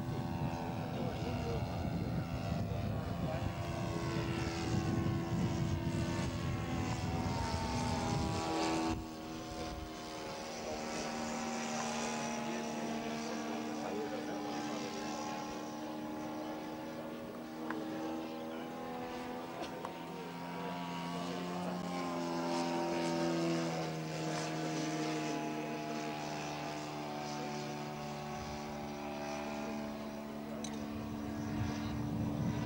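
ZDZ 80 two-stroke petrol engine of a large radio-controlled model biplane (Aero A-34 Kos) in flight, its propeller drone shifting up and down in pitch several times as the throttle changes and the plane passes. A low rumble runs under it for the first nine seconds, then stops abruptly.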